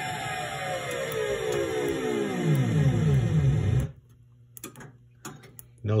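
Gottlieb Caveman pinball speech and sound board playing test sound 15 through its speaker: an electronic tone that glides steadily down in pitch from high to low, then stops abruptly about four seconds in.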